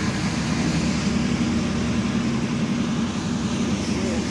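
Diesel engine of a heavy Smerch multiple-rocket-launcher truck driving past on a street: a steady low drone with an even hiss over it, as picked up by a phone microphone.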